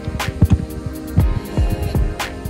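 Background music: an electronic track with a deep, thudding beat and held chords.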